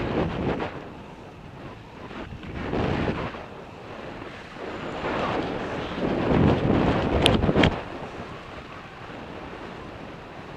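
Wind buffeting the microphone of a camera on a moving bicycle, swelling and fading in gusts and loudest about six to eight seconds in. Two sharp clicks come close together near the loudest part.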